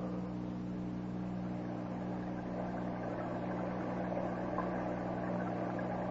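Steady low electrical hum with a hiss from an old, poor-quality recording of a radio broadcast, carrying no speech or music.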